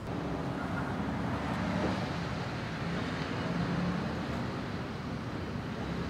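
Steady road-traffic noise with a low engine hum running throughout.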